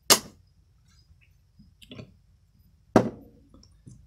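Two sharp metallic clinks about three seconds apart, each ringing briefly, with a few faint taps between them: the cast-aluminum housing of an electric fan motor being knocked and handled.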